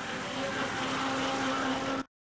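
Engine of a veteran car running as it drives slowly past, a steady hum with one constant note over outdoor noise. The sound cuts off abruptly at the end.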